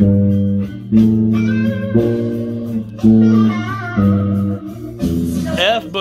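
Bass guitar playing a walking boogie-woogie line, plucked notes falling about one a second.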